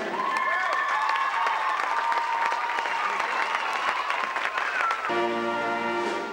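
Audience applauding, with a few whistles over the clapping. About five seconds in, held instrument notes come in under the applause.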